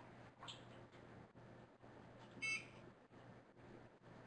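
A single short electronic beep, a stack of high tones lasting about a fifth of a second, about two and a half seconds in, over faint room tone with a low steady hum.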